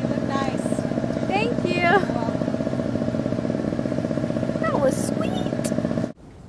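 A loud, steady engine-like hum, like a motor running nearby, with short voices over it about a second and a half in and again near five seconds. It cuts off abruptly at the end.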